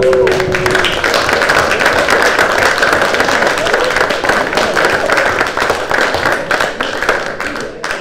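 A roomful of people applauding, a dense, steady clatter of clapping that stops at about eight seconds, with a drawn-out exclamation from one voice in the first second.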